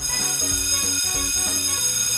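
Electric school bell ringing continuously, a steady high metallic ring that starts suddenly, with background music underneath.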